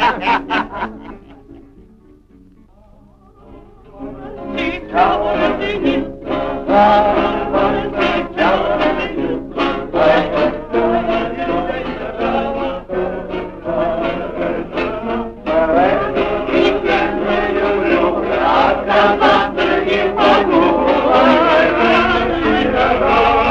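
A group of voices singing a song, with music. After a short quieter lull, the singing starts up about four seconds in and carries on.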